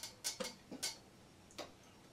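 A few faint, sharp clicks and taps from hands handling a Telecaster-style electric guitar, most of them in the first second and one more later.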